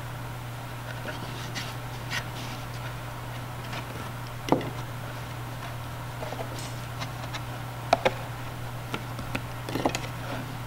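Light wooden clicks and taps of clothespins being unclipped and handled on a cardboard box loom, with faint rubbing of knit sock loops being pulled over one another. The sharpest click comes about halfway through, two more come close together near 8 s, and a cluster comes near the end, over a steady low hum.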